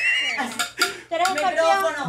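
Metallic jingling and clinking with a high ringing tone in the first half second, then a person's voice through the rest.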